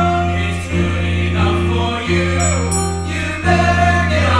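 A choir of young voices singing a gospel-style song together, held notes changing every second or so over steady low accompanying notes.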